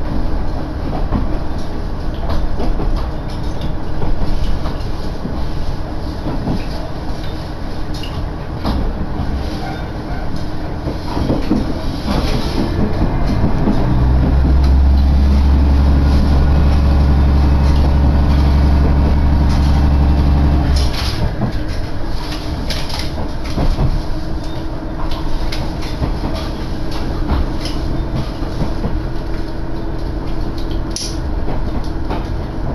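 Inside a KiHa 110-series diesel railcar on the move: a steady rumble with the clatter of wheels over rail joints. For several seconds in the middle, a deep drone from the underfloor diesel engine comes up loud, then drops away.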